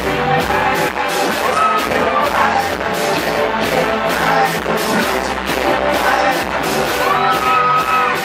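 Live pop-rock band playing with a steady drum beat under a male lead singer on a handheld microphone, who holds long high notes, the longest rising into a held note near the end.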